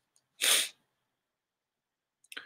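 A single short, sharp burst of breath through a man's nose, lasting about a third of a second, about half a second in.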